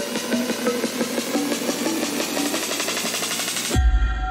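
Electronic dubstep-style music: a build-up of a rapid drum roll under short pitched synth notes. Near the end it drops into a heavy deep bass hit as the highs cut out.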